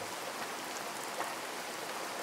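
Steady rainfall sound effect: an even hiss of rain falling.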